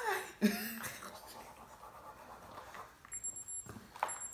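Faint scratching of pens on paper during a quick drawing, with a short laugh about half a second in.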